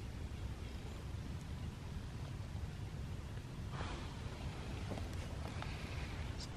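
Quiet outdoor background with a steady low rumble, and a few faint rustles and clicks of knife and hand work on a porcupine carcass being skinned.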